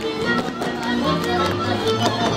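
Hungarian folk dance music from Kalotaszeg, played by a string band led by a fiddle, with sharp taps from the dancers' boots on the stage.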